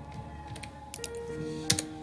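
Computer keyboard keystrokes: a handful of separate key clicks, the loudest pair near the end, over steady background music.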